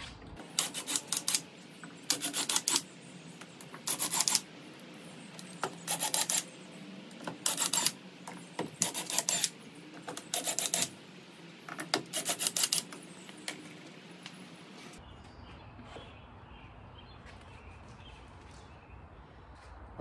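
Cordless DeWalt drill backing screws out of a wall-mounted plywood panel in a series of short runs, about a dozen spread over the first fourteen seconds.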